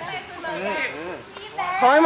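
Young people's voices talking and calling out, with a louder voice coming in near the end.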